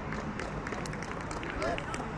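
Faint, distant voices of players calling out across an open cricket field over steady outdoor background noise, with one short call about three-quarters of the way through.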